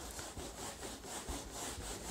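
A whiteboard duster wiping across a whiteboard in repeated faint rubbing strokes as the writing is erased.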